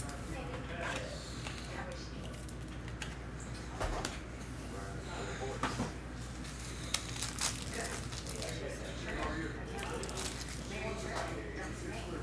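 Quiet handling of trading cards and their packaging: a few light clicks and rustles over a steady low hum, with faint voices in the background.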